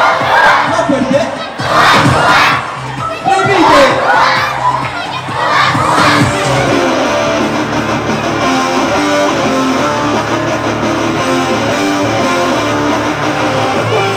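A crowd of children shouting and cheering over loud music for about the first six seconds, then an electric guitar playing a rock lead line over the music.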